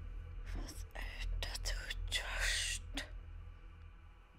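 A whispered voice: a few breathy words, over a low steady drone from the score that cuts off near the end.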